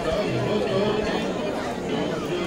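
Crowd chatter: many voices talking over one another at once, at a steady level.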